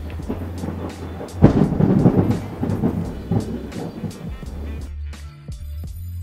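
A loud roll of thunder starting about a second and a half in and rumbling away over a couple of seconds, following a flash of lightning, heard over background music with a steady beat.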